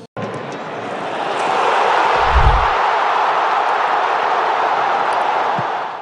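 Outro sound effect over a black screen: a rushing noise that swells up and holds, with a deep boom about two and a half seconds in, fading just before the end.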